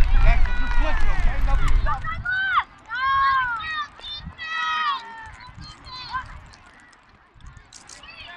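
Distant high-pitched shouting and calling voices at a youth flag football game, several short rising-and-falling yells, with a low rumble in the first two seconds.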